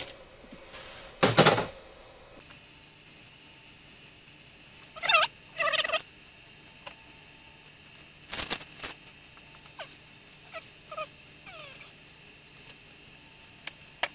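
Two short warbling calls from poultry, typical of a turkey gobbling, with faint chirps after them, amid brief crinkling and tearing of a paper candle wrapper being peeled off.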